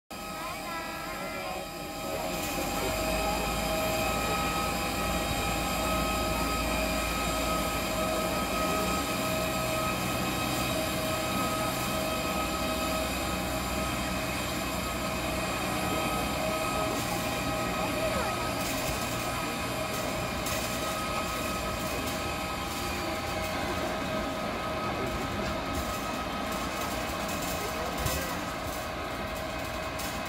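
Steady whine from an airliner at the gate, with several held tones over a low drone, as a pushback tug moves it back from the jet bridge. The sound swells about two seconds in and then holds steady.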